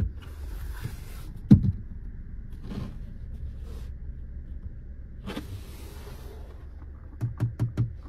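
Fingers knocking and pressing on a Volvo V90 Cross Country's dashboard and trim: a few scattered soft knocks, a sharper one about a second and a half in, then four quick knocks near the end, over a low steady hum in the cabin.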